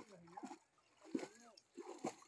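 A nilgai splashing and sloshing as it moves in a muddy water-filled drain, with people's voices talking over it.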